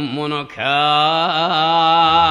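Male voice singing a kayō rōkyoku phrase with heavy vibrato: a wavering line breaks off briefly about half a second in, then a single long note is held.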